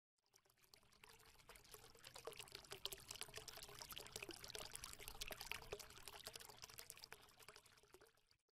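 Faint, irregular crackle of many small clicks, like trickling or pouring water, swelling from about a second and a half in and fading away near the end: the sound effect of an animated channel logo intro.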